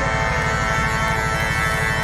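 Live band holding a long sustained final chord at the end of a song, a steady wash of held notes over a fast low rumble, heard from within the crowd through a phone's microphone.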